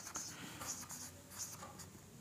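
Marker pen writing on a whiteboard: a string of short, faint scratchy strokes as letters are written.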